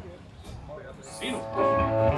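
A lull between songs in a live band set. About one and a half seconds in, a steady held note or chord from an amplified stage instrument starts sounding.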